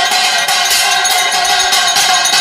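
Metal bells ringing rapidly and continuously, a dense clangour of many overlapping ringing tones struck several times a second.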